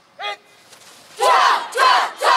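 A large group of students shouting "Cia!" in unison as they punch in a martial-arts drill: two loud shouts about half a second apart, starting past the middle. A short single call sounds just after the start, while the group is still quiet.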